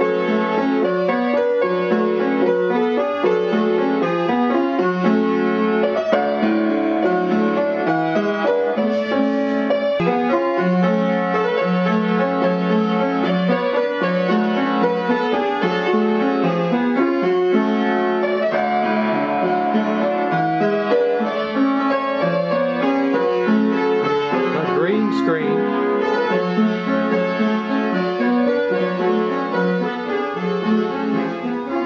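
Upright piano being played: a continuous tune of many notes at a steady loudness.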